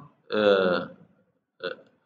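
A man's voice holding one drawn-out vowel sound for about half a second, pitch sinking slightly, followed by a brief short sound about a second later.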